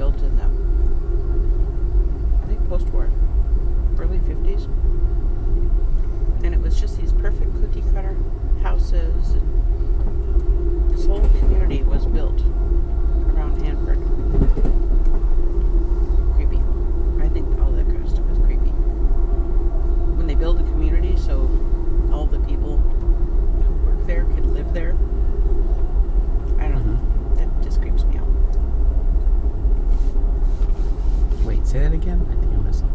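Inside a moving Amtrak Empire Builder passenger car: the train's steady running rumble with a constant hum and frequent small clicks and knocks from the car, and indistinct voices in the background.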